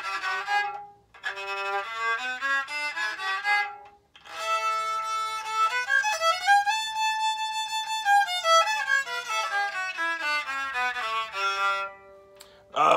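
Homemade cigar box violin bowed through a scale, played haltingly by a beginner: two short rising phrases, then a longer run that climbs about an octave note by note, holds near the top and steps back down.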